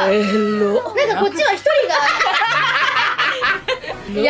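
Women's voices with a short exclamation, then a group of women breaking into laughter about two seconds in.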